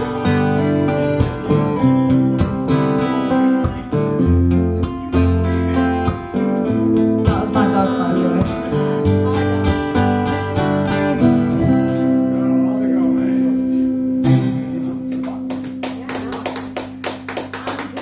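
Acoustic guitars playing an instrumental passage, one picking a fast lead solo over strummed chords. About three-quarters of the way through, a final low note is held ringing while clapping starts.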